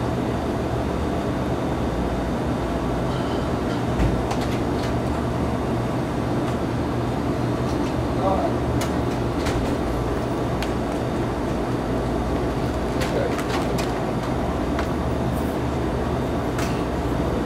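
Gas station ambience: a steady low rumble of vehicles, with scattered clicks and knocks and indistinct voices now and then. A thump stands out about 4 seconds in.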